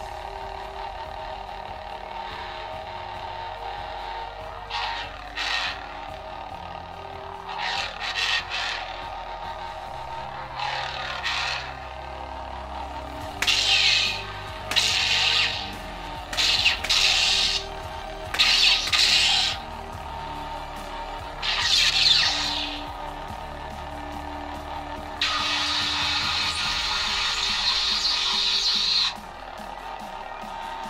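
Lightsaber sound-board hum from the hilt speaker of a neopixel saber running its 'Luke's' sound font, steady throughout. From about five seconds in the blade is swung, giving about a dozen short swing swooshes over the hum. Near the end comes a louder sustained buzz lasting about four seconds.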